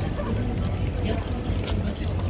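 Busy city street ambience: a steady low rumble of traffic and wind on the microphone, with passers-by talking.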